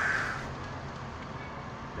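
Steady low rumble of a car driving, engine and tyre noise heard from inside the cabin.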